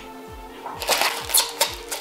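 Background music with a steady beat. About a second in, a short burst of crinkling and clicking as a small plastic bag of parts is picked up and handled.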